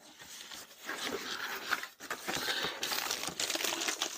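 Cardboard box flaps and plastic wrapping rustling and crinkling as a leaf blower is unpacked, irregular and starting up about a second in.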